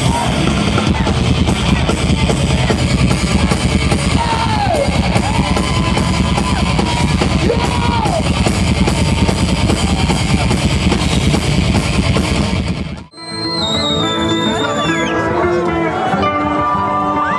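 Live heavy metal band playing at loud volume: distorted electric guitars, bass and drums. About thirteen seconds in it cuts abruptly to another live set, with held guitar notes and a high note sliding down.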